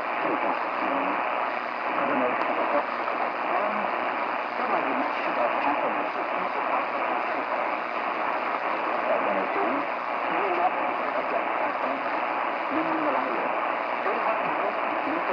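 Shortwave radio broadcast of speech in Shan playing through a Tecsun PL-600 receiver's speaker, set to narrow bandwidth. The voice sits under steady static hiss and sounds muffled, with the high end cut off.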